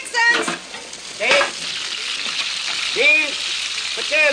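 Food frying in large skillets on a kitchen stove, a steady sizzle, with a few short vocal sounds from the cooks about a second in and near the end.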